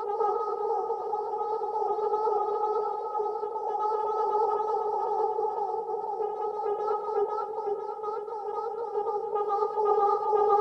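Hologram Microcosm effects pedal in its Mosaic C setting, replaying micro-loops of a spoken voice as a steady, layered, warbling drone. The shimmer on top turns choppier in the second half as the knobs are turned.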